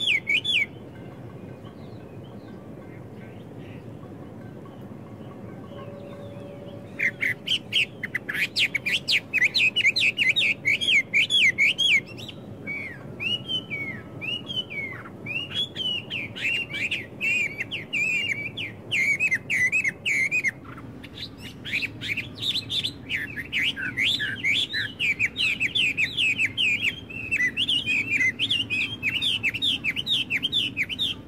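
Songbirds singing in fast runs of high chirps and trills, with slower slurred whistles in between. The song breaks off half a second in, leaving only a faint low background hum for about six seconds, then starts again about seven seconds in.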